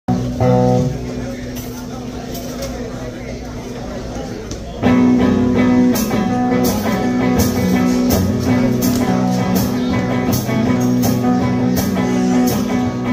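Live band of electric guitars, electric bass and drum kit playing: a short chord, a quieter stretch, then the full band with drums and cymbals comes in about five seconds in and plays a steady beat.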